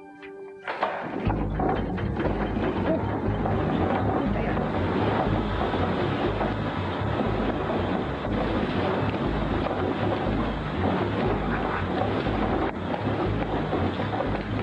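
A large textile mill machine starts up suddenly about a second in, then runs with a loud, dense clatter over a pulsing low rumble.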